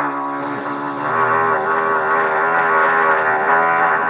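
Trumpet sounding a long, low, sustained note whose pitch wavers slightly as it is held.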